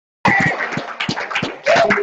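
Dead silence for a moment at an edit, then indistinct voices in a room.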